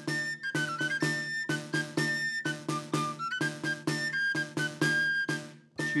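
A three-hole pipe plays a melody while the same player beats a steady rhythm on a tabor, a double-headed drum whose gut snare buzzes against the head at each stroke. The music breaks off briefly just before the end.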